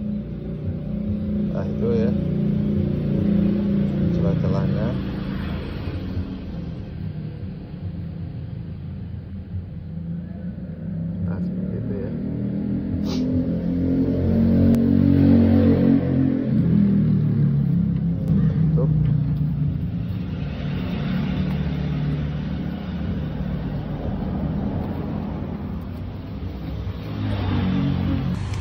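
A motor vehicle engine with a low rumble throughout. It grows louder to a peak about halfway through, its pitch rising and then falling, and then fades, as a vehicle passing by does.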